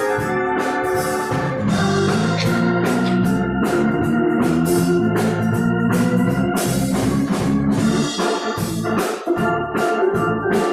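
Organ playing a praise-music passage, with a steady drum and cymbal beat.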